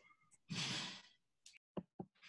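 A person's breathy sigh or exhale into a microphone, lasting about half a second, followed by a couple of faint clicks.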